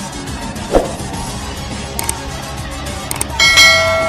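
A short thump about a second in, two sharp clicks, then a small bell rings once near the end and fades: the click-and-bell sound effect of a subscribe-button overlay, over background music.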